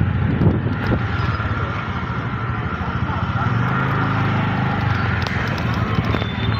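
Outdoor street ambience: a steady low rumble with indistinct voices of people in the background.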